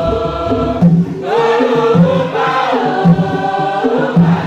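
A choir of young voices singing a Tiv-language church hymn together, with a steady, repeating low part underneath.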